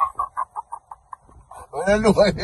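A man's cackling laugh: a quick run of short, clipped pulses, about seven a second, fading out over about a second.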